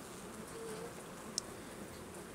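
Faint steady buzzing of a honeybee colony on a comb frame lifted out of an open nucleus hive.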